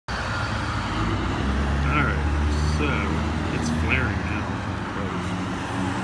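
A car driving past on the street, its engine running with a low hum that swells and fades over a few seconds. A few short high chirps sound over it.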